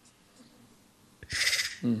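A pause in speech, then about a second in a short breathy hiss of air from a laughing man, with a brief spoken 'hmm' right after.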